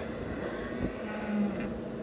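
Tractor engine running steadily in the background, a low even hum, with a soft knock just under a second in.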